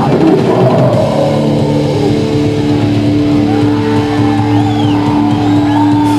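Loud live rock band with distorted electric guitar and drum kit: busy playing for about a second, then a guitar chord held and left ringing.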